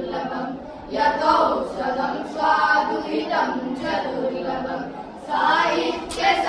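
A group of boys singing a Sanskrit song together, unaccompanied, with brief pauses between phrases under a second in and again near five seconds in.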